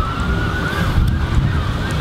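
Wind buffeting the microphone, a loud uneven low rumble, with a faint high tone in the background that rises slowly and wavers.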